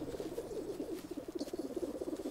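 American black bear cubs purring with contentment: a fast, even, pulsing low hum.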